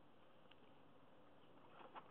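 Near silence, with one faint tick about half a second in and a brief faint scrape near the end, as a metal lock pick is set into a TESA T5 lock cylinder's keyway.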